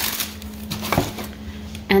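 Paper bulb packets and mesh bulb bags being handled in a cardboard box: rustling with a few light knocks, the clearest about a second in.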